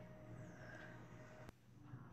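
Near silence: faint room tone, broken by a single click about one and a half seconds in.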